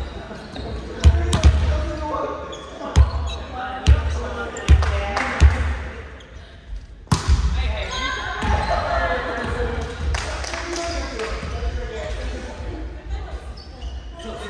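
Volleyball being hit: about six sharp, echoing smacks of hands or arms on the ball in the first half, ringing around a large gym hall, with players' shouts and calls throughout.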